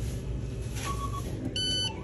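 Electronic beeps from a store self-checkout: a short, plain beep about a second in, then a higher, buzzier beep about half a second later, over a steady low store hum.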